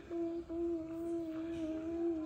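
A person's voice humming one long, steady note, with a brief break about half a second in.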